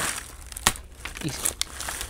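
Dry corn husks rustling and crackling as they are peeled back from a dried ear of corn, with a few sharp snaps.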